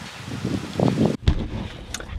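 Faint outdoor wind noise with a few soft low sounds, then an abrupt change about a second in to the low rumble inside a 4x4's cabin.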